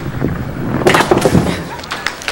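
Five-pin bowling ball rolling down a wooden lane, then hitting the pins a little under a second in: a sudden crash and clatter of pins that dies away over about a second.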